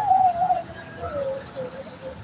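A high voice held on one long wavering note that slides lower about a second in.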